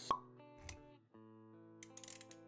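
Intro-animation jingle: a sharp pop sound effect just after the start, over soft held music notes. A low thud comes a little over half a second in, and the music cuts out briefly before the notes resume.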